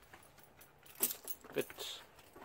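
Metal clinking of a dog harness's ring and leash clip as the dog moves, with a few sharp clinks in the second half.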